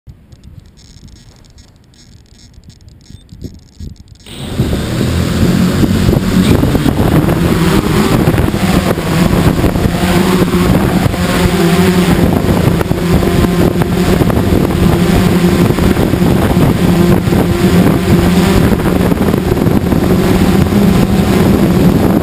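An X8 coaxial octocopter's electric motors and propellers spin up suddenly about four seconds in, then run with a steady whir as the drone lifts off and flies low, heard from a camera mounted on the drone itself.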